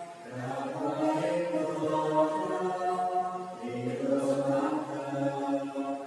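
A slow church hymn sung in long held notes, the phrases breaking briefly near the start and again about four seconds in.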